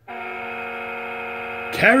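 A steady buzzing hum with many overtones starts suddenly just after the start and holds at an even level until a man's voice cuts in near the end.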